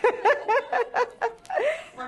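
A woman laughing: a quick string of short, high-pitched bursts, then a breathy outbreath near the end.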